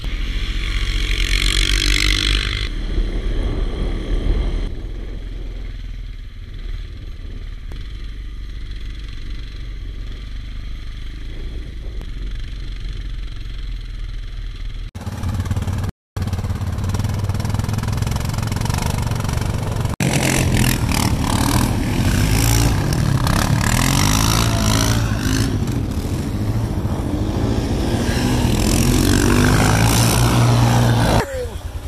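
ATV engines running and being ridden through snow, cutting between several quads; a brief break about sixteen seconds in, and in the later part the engines rev up and down repeatedly.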